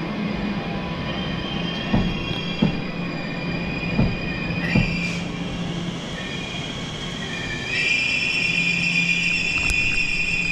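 A Class 345 electric train moving slowly through a station. It gives a steady high-pitched squeal that gets louder about eight seconds in, over a low hum, with a few sharp clicks of the wheels over rail joints in the first five seconds.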